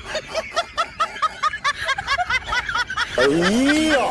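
Rapid snickering laughter: short rising-and-falling giggles, about five a second. About three seconds in, it gives way to one longer, lower voiced sound that glides up and then down.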